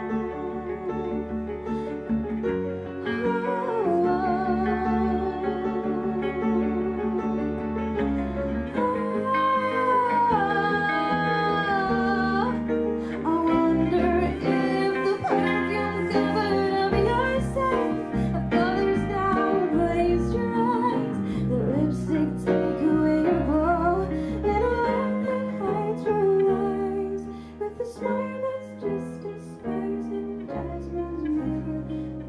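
A small live band playing a song: acoustic and electric guitars and an upright piano over drums, with a woman's voice singing a melody line. The music swells a few seconds in and dips briefly near the end.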